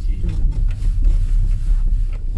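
Car driving slowly on a dirt road, heard from inside the cabin: a steady low rumble of engine and tyres.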